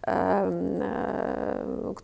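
A woman's voice holding one long hesitation sound, a drawn-out 'eee', at an even pitch for nearly two seconds before it stops.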